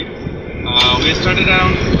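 Car engine running, heard as a steady low rumble from inside the cabin, with a sharp click a little under a second in, followed by a voice.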